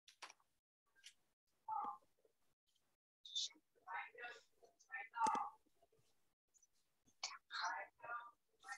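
Soft whispered and murmured speech in short, scattered phrases over a call's audio, as if someone were quietly counting to themselves.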